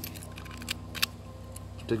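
A few faint, sharp clicks of small metal objects being handled: a rusty old cartridge case and a small metal tool turned over in the hand. They sit over a steady low hum.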